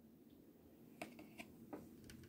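Near silence, broken by three faint, light clicks in the second half as tarot cards are handled and gathered up.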